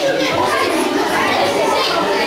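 Several children talking over one another in a room, an indistinct steady chatter of young voices.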